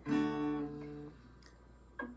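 Acoustic guitar strummed once: a chord that rings out and fades away over about a second. A short string sound follows near the end.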